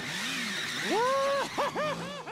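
Cartoon sound effect of a motor scooter spinning donuts: the engine revs in one long rise and fall of pitch, then several quicker ones, over a steady hiss of skidding tyres.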